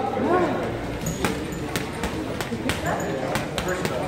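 Boxing gloves landing on a heavy punching bag: a quick series of sharp knocks, about three a second from about a second in.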